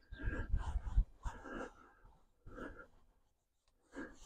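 Microfiber towel wiping a plastic car door panel: quiet, uneven rubbing strokes, several in the first two seconds and one more short one, then stopping.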